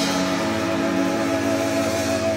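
Live rock band's electric guitars and bass holding one sustained chord that rings on steadily with a slight wobble, the drums no longer hitting.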